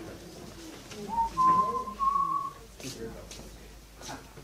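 A person whistling two short held notes near the middle, the first reached by a quick upward slide and the second slightly higher, with faint murmuring voices underneath.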